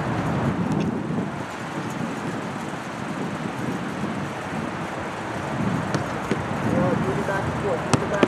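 Steady outdoor rumble on a practice field, with faint distant voices and a few sharp thuds of soccer balls being kicked, the last near the end.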